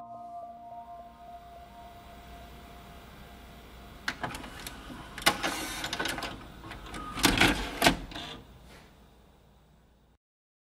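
A held music tone fades out in the first second or so. About four seconds in, a few seconds of irregular clicks and knocking clatter follow, loudest toward the end, and then it dies away.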